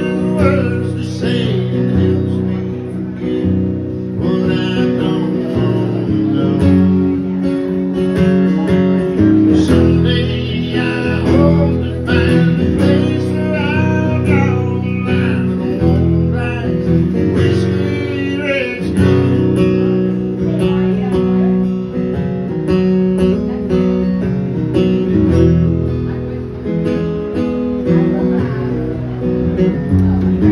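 A man singing while strumming an acoustic guitar, a solo live song.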